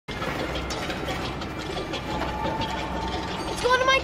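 Fast, steady mechanical clicking and clattering like a ratchet, from the machinery carrying a wrapped present along a conveyor chute. A boy's voice comes in near the end.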